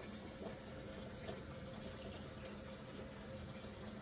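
Faint, steady rushing noise with a low hum underneath: continuous background noise in a working kitchen.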